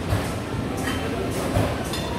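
Steady background noise of a busy room, with soft low thumps about every three-quarters of a second from the footsteps of someone walking with a handheld camera.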